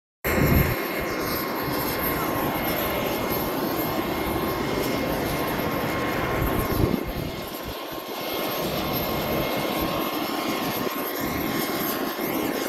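Aircraft engine running steadily: a constant rush with a steady high whine held throughout, and an uneven low rumble beneath.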